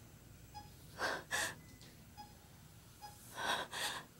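A woman's tearful, gasping breaths: two pairs of sharp breaths, about a second in and again near the end. Faint short beeps sound in the background.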